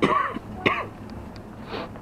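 A man coughing: two loud coughs about half a second apart at the start.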